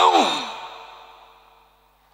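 A man's sigh, voiced and falling in pitch, starting loud and fading away over about a second and a half.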